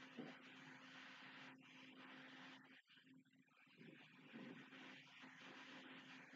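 Near silence: faint recording hiss with a low steady hum.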